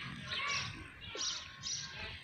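Faint, scattered bird chirps over quiet outdoor background noise.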